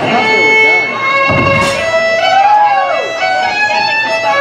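Live country band playing: a fiddle sliding up and down between notes over guitar, with one thump about a second and a half in.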